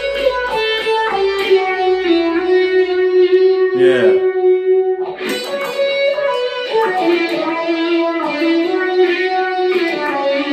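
Electric guitar played through the BigNoise Phase Four analog phaser pedal with a little overdrive and delay, picked up by a phone's microphone: a long held note with a sweeping phase effect, a short break about four seconds in, then more melodic phrases.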